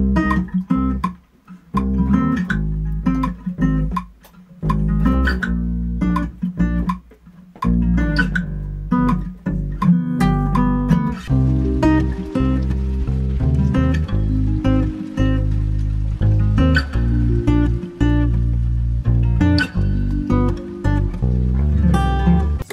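Electric bass guitar playing root notes together with an acoustic guitar part. The notes stop and start in the first eight seconds or so, then run on steadily.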